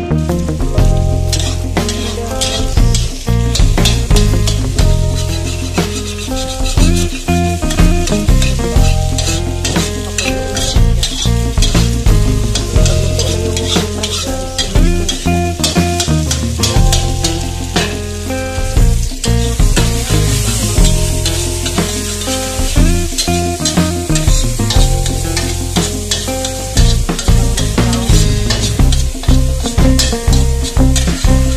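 Background music with a steady beat and bass, over egg sizzling in hot oil in a wok. A metal spatula stirs and scrapes the pan as the egg is scrambled.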